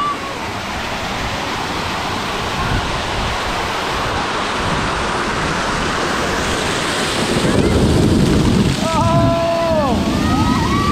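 Water rushing steadily, growing louder about seven seconds in as an artificial waterfall pours onto the inner tubes and splashes over the camera. Near the end a voice cries out briefly.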